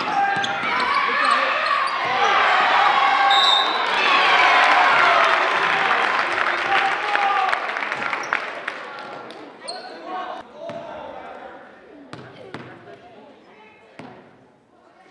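Spectators and players shouting over one another while a basketball bounces on a gym's wooden floor. The voices die down after about eight seconds, leaving a few scattered ball bounces and thuds.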